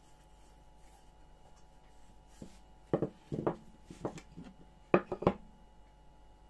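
A wooden rolling pin rolls quietly over gingerbread dough on a tabletop. About three seconds in, a quick run of sharp wooden knocks and clatters follows as the rolling pin and a carved wooden gingerbread mould are set down and moved on the table, the loudest knock about five seconds in.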